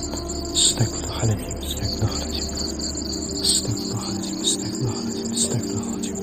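Crickets chirping in a steady high-pitched chorus, over a low, steady background music tone.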